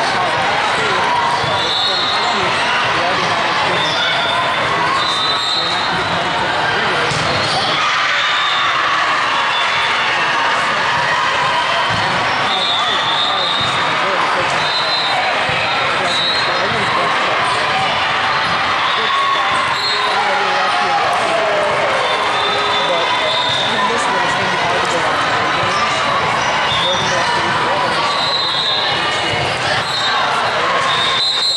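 Busy sports-hall din: many voices talking and calling over one another, with balls bouncing and being struck and brief high-pitched chirps scattered throughout, all echoing in a large hall.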